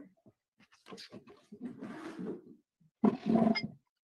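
A person crying: irregular sobbing breaths and choked voice sounds, the loudest burst near the end.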